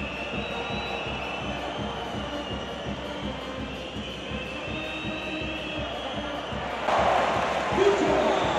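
A fan brass band of trumpets, trombones and saxophones with a bass drum, playing in the stands over the crowd noise of a basketball arena. The crowd gets louder about seven seconds in.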